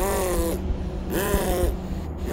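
Two short vocal sounds, each about half a second long and about a second apart, over a low rumble.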